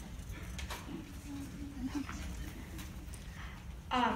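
Low rumbling hall noise with a few faint clicks, and a faint, thin whining voice from about one to three seconds in.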